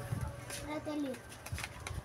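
A faint voice in the background, brief and low, with a few soft clicks.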